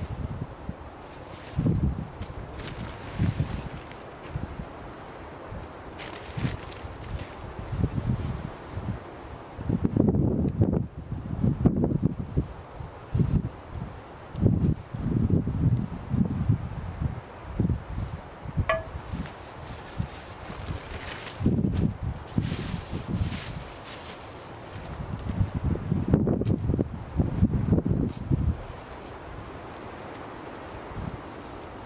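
Wind buffeting the microphone in uneven low gusts that come and go, heavier about ten seconds in and again near the end.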